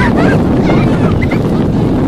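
Wind buffeting the camera's microphone: a loud, steady low rumble that covers the field sound.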